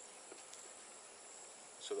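Faint, steady high-pitched chorus of insects, with a single spoken word at the very end.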